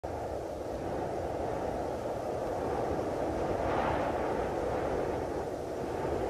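A steady rumbling noise that swells slightly about halfway through.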